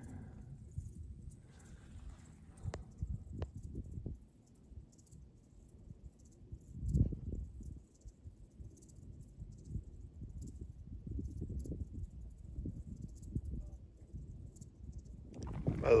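Low, uneven rumble of wind buffeting and handling noise on a phone microphone, with a few faint clicks early and a louder thump about seven seconds in.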